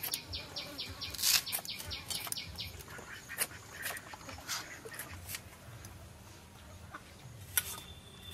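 Sharp clicks as fresh coriander is cut against a bonti, an upright curved blade, and dropped into a steel plate, over a bird calling in a quick run of high pulses during the first few seconds, with another short chirp near the end.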